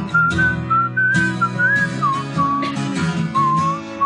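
A tune whistled over an acoustic guitar being strummed; the whistle slides from note to note while the guitar strikes chords every second or so.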